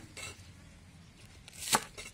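Large kitchen knife cutting through a bunch of green onion stalks on a wooden chopping board: one crisp, slow chop near the end, rising to a sharp knock as the blade meets the board, with the tail of an earlier chop at the start.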